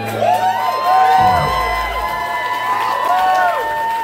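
Live concert audience cheering as a song ends, many high whoops and shouts overlapping. A low bass note slides downward about a second in.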